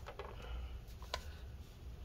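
A few faint, light clicks from a hot glue gun being handled and put to the work, one about a second in, over a low steady hum.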